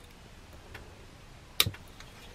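Retractable USB cable reel clicking as its cord is pulled: a faint click, then a sharper one about a second and a half in.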